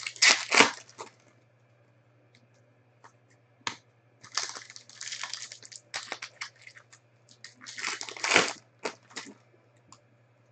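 A foil trading-card pack wrapper crinkling and tearing as it is opened and the cards are pulled out, in several bursts, loudest at the very start and again about eight seconds in.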